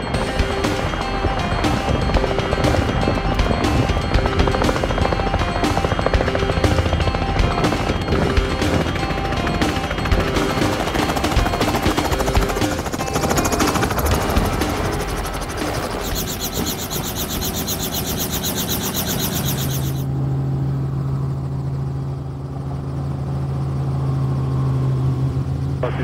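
Background music plays over a Robinson R44 Raven II helicopter's rotor and piston engine. From about twenty seconds in the music gives way to a steady low drone of the engine and rotor heard from inside the cabin.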